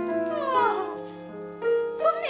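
Piano holding sustained notes while a voice slides down in pitch in a short wail about half a second in.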